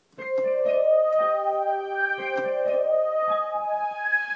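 Digital piano playing slow, sustained chords layered through MIDI with a synth sweep pad, with new notes entering about every second.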